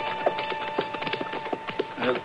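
A music bridge's last held note fading away, under a run of sharp, irregular wooden knocks and clicks from radio-drama sound effects, about four or five a second.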